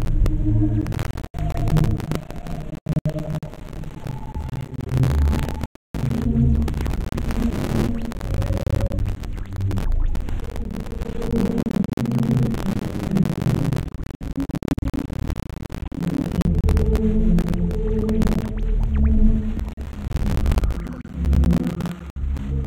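Experimental electronic synthesizer drone: low throbbing, humming tones with held notes that shift in pitch. It cuts out briefly a couple of times and drops to near silence for a moment about six seconds in.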